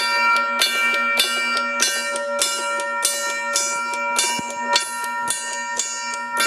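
A 15-inch brass Moses Crane fire telegraph gong struck over and over by its hammer, about ten even strokes in six seconds, each stroke landing on the ringing of the last so that the bell's tones never die away.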